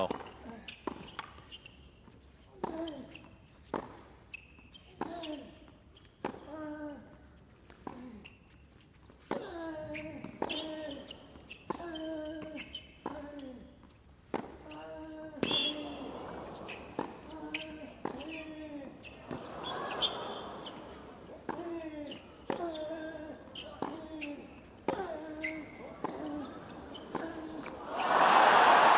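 Tennis serve and a long baseline rally on a hard court: the ball is struck by racquets about every one and a quarter seconds, and most hits come with a player's short grunt.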